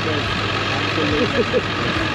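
Vehicle engines idling in a steady low hum, with people talking in the background.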